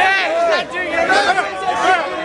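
Several people talking and calling out over one another, with their voices overlapping into one unbroken jumble of chatter.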